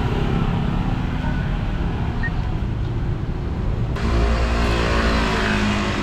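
Street traffic, with cars and motorbikes driving past and a steady engine hum. About four seconds in the sound changes abruptly, and a louder engine note, typical of a motorbike passing close by, comes in.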